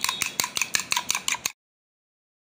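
Eggs being beaten by hand in a glass bowl, a metal utensil clinking rapidly against the glass about seven times a second. It cuts off abruptly into dead silence about one and a half seconds in.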